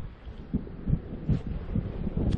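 Wind buffeting the microphone outdoors: low, irregular rumbles and soft thumps.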